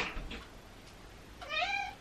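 A domestic cat meowing once, about one and a half seconds in: a short call that rises and then falls in pitch.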